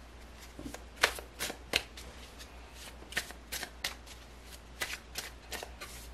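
A deck of tarot cards shuffled by hand: a string of about a dozen crisp, irregular card snaps and slaps.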